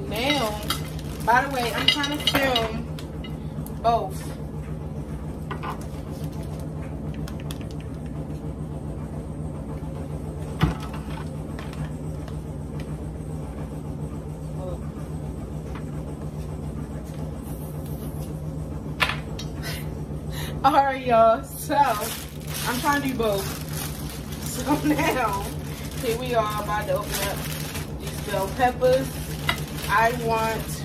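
A steady low hum under plastic rustling and handling sounds as a bag of bell peppers is moved about on a counter. A voice comes in short stretches near the start and through the last third.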